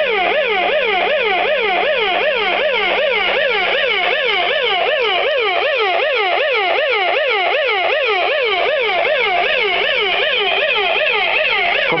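Electronic warning siren on a Cemilusta press machine, warbling up and down about three times a second, loud and steady, then cutting off at the end. It is the machine's alarm bell going off.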